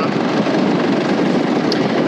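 Wind rushing and buffeting across the microphone, a steady loud roar of noise with no pitch to it.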